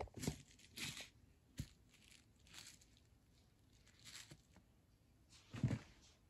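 Faint handling noises: a scatter of short scrapes and rustles as plastic model horses are moved over loose, gritty ground, with a louder knock near the end.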